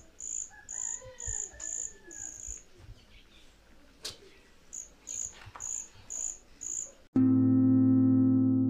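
A cricket chirping in runs of short, high-pitched chirps, about two a second, with a pause of a couple of seconds in the middle. About seven seconds in, loud sustained keyboard music starts abruptly.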